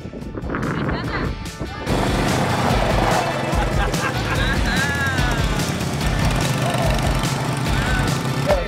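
Small youth ATVs running as two kids ride them past, a dense engine-and-wind noise that starts abruptly about two seconds in, with music underneath.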